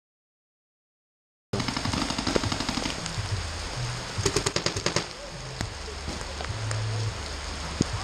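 Silence for about the first second and a half, then paintball markers firing in rapid strings of shots, the heaviest runs about two seconds in and again around four to five seconds, with a few single shots after, over steady rain.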